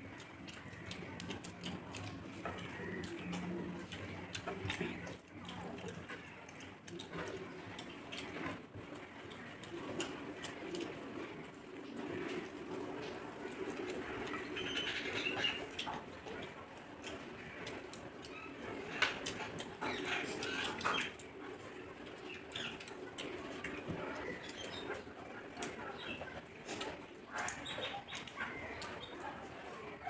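Two people eating biryani with their hands: chewing and lip-smacking mouth noises, with many small wet clicks, and fingers mixing rice on clay plates.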